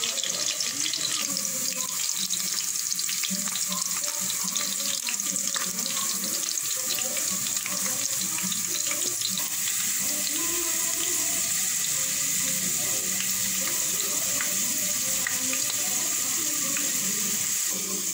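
Sliced onions and whole spices (bay leaves, peppercorns, cardamom) frying in hot oil in a metal pot: a steady sizzle with fine crackling.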